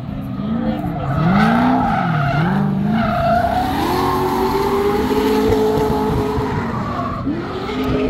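Drift car engine revving hard with its pitch swinging up and down as the throttle is worked, then holding high and steady, over the sound of tyres skidding through the drift.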